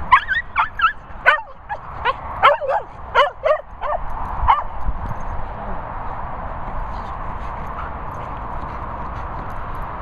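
A dog barking and yipping in a rapid run of about a dozen short, high calls, which stop about five seconds in.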